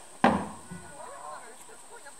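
A single loud thump about a quarter of a second in as a heavy black plastic tub drops to the ground, dying away over about half a second.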